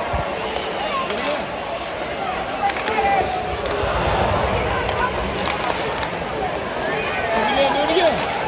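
Ice hockey arena crowd: a steady hubbub of spectators talking around the seats, with a few sharp clicks from sticks and puck in the play on the ice.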